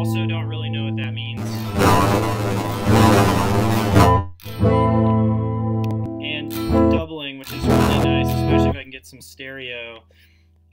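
Guitar played through a software modulation effect, a Max/MSP patch's vibrato, flanger and chorus unit. There is a long strummed chord from about a second and a half in, then single notes, and a second strum near the end.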